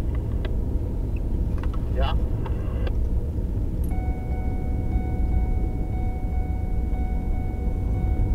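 Steady low engine and road rumble inside a vehicle cab driving at highway speed. About four seconds in, a steady high electronic tone comes in and holds.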